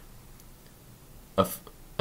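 A quiet pause in a man's narration, then about one and a half seconds in a single short vocal sound from him, a breath or clipped mouth noise before he speaks again.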